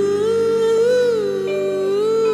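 1961 doo-wop vocal group recording: a long held sung note, lifting slightly about a second in, over sustained background harmonies.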